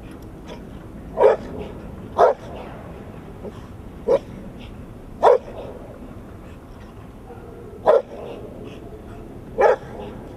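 A large black-and-tan dog barking six single barks at uneven intervals, one to two and a half seconds apart.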